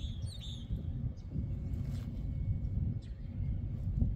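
Steady low outdoor background rumble, with a few short bird chirps in the first second.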